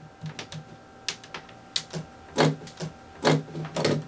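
Irregular sharp clicks and light knocks, a few a second and uneven in spacing, over a faint steady hum.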